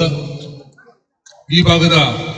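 A man speaking into a handheld microphone; his speech trails off into a short silent pause just under a second in, then starts again abruptly.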